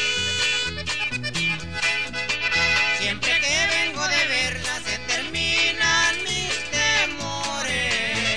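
Instrumental break of a norteño corrido: accordion melody over a bouncing two-beat bass and bajo sexto rhythm.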